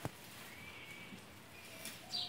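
Faint handling sounds of hands digging into a sack of manure, with one sharp click at the start and a smaller one near the end.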